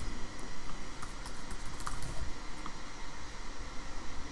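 Typing on a computer keyboard: a scatter of light, irregular key clicks as a login email and password are entered.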